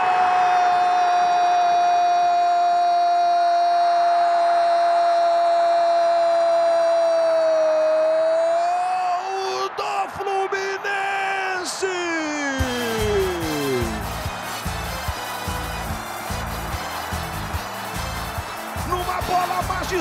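Football commentator's long drawn-out goal cry, held on one pitch for about eight seconds before it wavers and fades, over crowd noise. About twelve seconds in, a falling glide leads into music with a steady beat.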